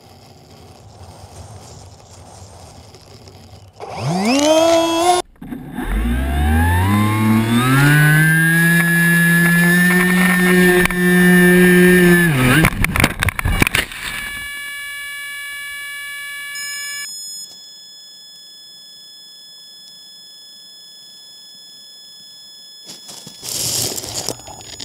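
Small engine revving hard about four seconds in, its pitch climbing and then holding high at full throttle, cut off suddenly near the middle as the vehicle runs off the road into rough grass, followed by about a second of rattling knocks. After that a steady high whine remains, with a short loud burst of noise near the end.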